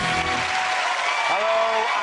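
Studio audience applauding as the theme music ends about half a second in, with a voice over the applause in the second half.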